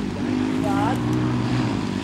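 Enduro dirt bike engine running, its pitch wavering slightly up and down. A brief voice comes in about a second in.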